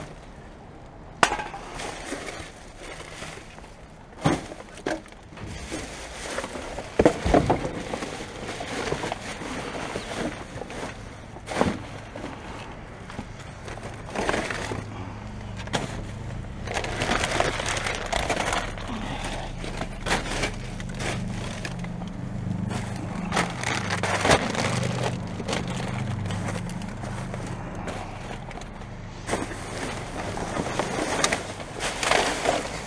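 Rubbish being sorted by hand inside a full dumpster: plastic bin bags rustling and crackling, with a handful of sharp knocks and clinks of cans and bottles scattered through. From about ten seconds in a low steady hum runs underneath.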